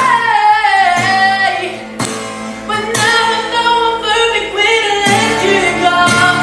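A young man sings in a high voice to his own strummed acoustic guitar. Near the start a long held note slides down, then shorter sung phrases follow over the chords.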